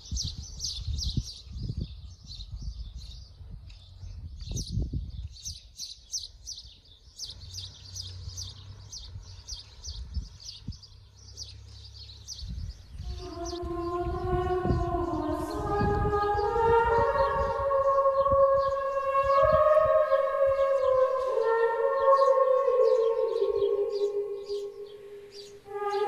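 Rapid high chirping of small birds over a low rumble of wind on the microphone; about halfway through, slow sustained chords that change pitch in steps come in and grow louder as background music.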